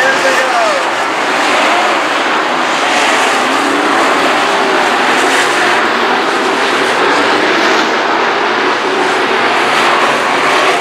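Dirt modified race cars' engines running hard around the oval in a loud, steady wall of engine noise, the pitch rising and falling as cars pass.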